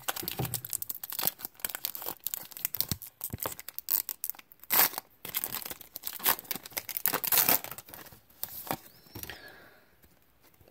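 A basketball trading card pack's wrapper being torn open and the cards handled: crinkly rustling and tearing, with two louder rips about five and seven seconds in.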